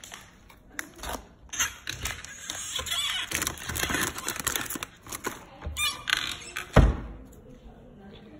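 Rummaging in a kitchen cupboard: clicks, knocks and rustling as food packets are moved about, with one loud thump near the end.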